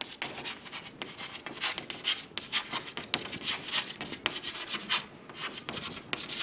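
Chalk scratching on a chalkboard as a phrase is written out by hand, a quick run of short strokes with a brief lull about five seconds in.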